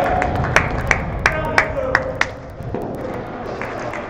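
Players shouting to one another and sharp knocks of the ball being kicked and struck against the boards in an indoor five-a-side hall; the loud calls and knocks come in the first half and then ease off.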